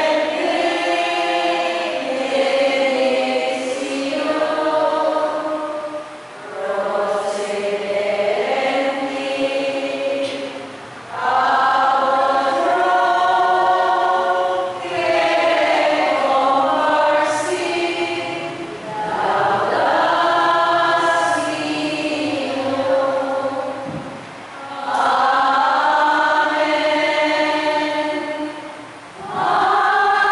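A group of people singing a hymn together in long held phrases, with a short break for breath every few seconds.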